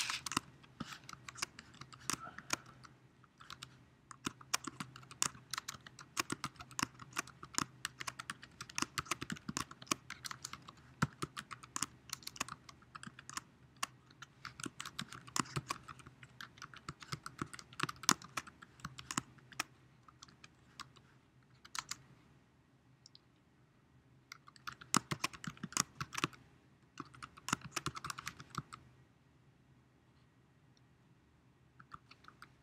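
Typing on a computer keyboard in quick bursts of key clicks, with a pause of a couple of seconds about two-thirds of the way through and the typing stopping shortly before the end. A faint steady hum lies underneath.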